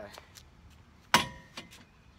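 Metal swing-away arm of a Stowaway Max 2 hitch cargo carrier frame being swung shut against the hitch frame: a few light clicks, then one sharp metallic clang with a short ring about a second in.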